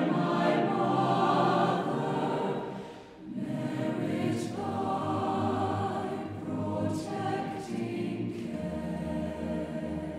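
Mixed choir of men and women singing, full and loud at first, dipping briefly about three seconds in, then carrying on more softly. A low held note enters near the end.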